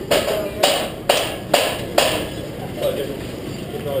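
A run of five or six sharp, ringing knocks, about two a second, that stop about three seconds in, under faint background voices.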